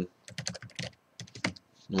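Computer keyboard keys typed rapidly as a password is entered, about a dozen keystrokes in two quick runs with a short pause between.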